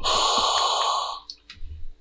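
MEDUMAT Transport emergency ventilator hissing as it pushes gas during its automatic function check, with steady high whistling tones over the hiss, for just over a second before it stops. A couple of light clicks follow.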